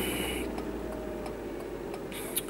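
Steady low rumble of a car's engine and road noise inside the cabin, with a faint steady tone over it. A short hiss comes right at the start.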